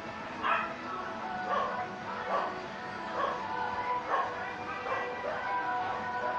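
A dog barking over and over, about seven barks a little under one a second apart, over background music with steady held notes.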